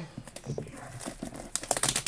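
Plastic shrink wrap on a cardboard box crinkling as a hand grips it and starts tearing it open, scattered crackles becoming a louder burst of crinkling near the end.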